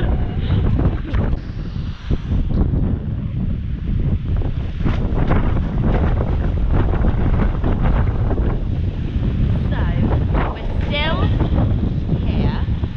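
Strong wind buffeting an action camera's microphone, a loud, rumbling, fluttering roar throughout, with a brief voice near the end.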